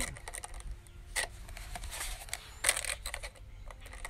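Handling of a taped-together pair of plastic water bottles: a few light plastic clicks and crinkles, with a louder crinkle a little before the end.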